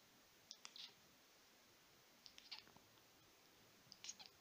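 Faint kissing smacks: two small clusters of short, soft clicks, about half a second in and again around two and a half seconds, over near silence.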